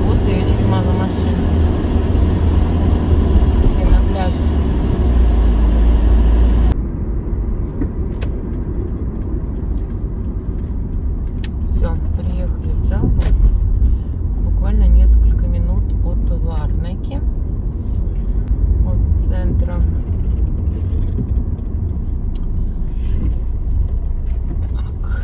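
Low, steady road and engine rumble heard from inside a moving car, with faint voices at times. About seven seconds in, the sound abruptly turns duller.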